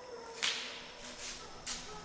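Two footsteps of shoes scuffing on a gritty, dusty concrete floor, about a second and a quarter apart, the first the louder.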